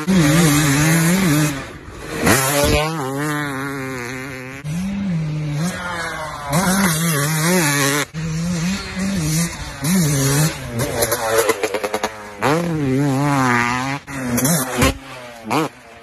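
Dirt bike engines revving hard and easing off again and again, the pitch rising and falling with the throttle. The sound breaks off suddenly several times as one run gives way to the next.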